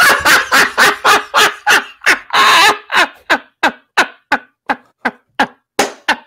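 A man laughing hard in a long run of rapid ha-ha pulses, about three or four a second, with one longer, louder whoop a couple of seconds in. The laughter gradually tails off into shorter, fainter breaths.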